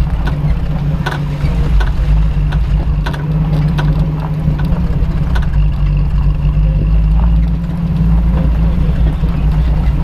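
Chevrolet Silverado pickup's engine running with a steady low drone while driving a gravel trail. Occasional sharp knocks and rattles come from the bumpy ground.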